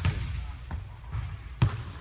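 Basketball bouncing on a hardwood gym floor: a sharp bounce right at the start and a louder one about a second and a half in.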